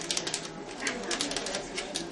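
A rapid, irregular run of small dry clicks and crackles, over a faint murmur of voices.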